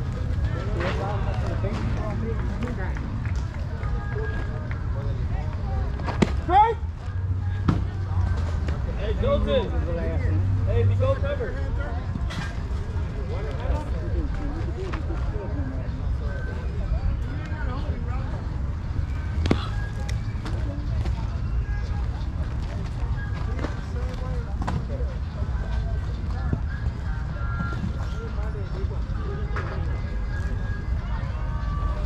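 Baseball field ambience: indistinct chatter and calls from players, over a steady low rumble. A few sharp pops stand out, the loudest about six seconds in.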